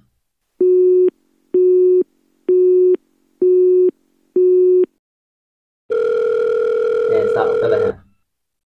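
Telephone call tones from a mobile phone on speaker as a call is placed: five short steady beeps about a second apart, then a continuous tone from about six seconds in.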